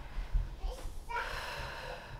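A young child's voice says "pizza", followed by about a second of a breathy, hissing vocal sound.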